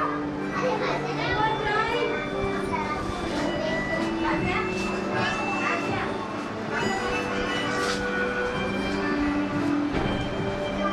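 Many children chattering and calling out at once over music with long held notes playing in the background.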